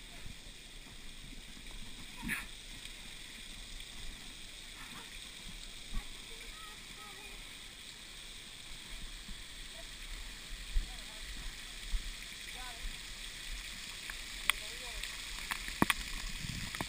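Steady, fairly quiet hiss of water spraying down from an overhead sprinkler, with faint distant voices. A few sharp knocks sound near the end.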